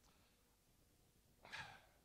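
Near silence, then one short intake of breath close to a handheld microphone about one and a half seconds in, just before the man resumes speaking.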